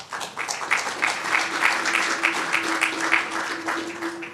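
Luncheon audience applauding with dense, steady clapping. About a second in, a single held musical tone enters beneath the clapping and carries on.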